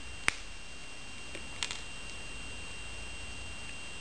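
Flush-cut wire cutters snipping through metal wire, cutting a jump ring off a wire coil: one sharp click about a third of a second in, then a fainter click about a second and a half in. A faint steady hum runs underneath.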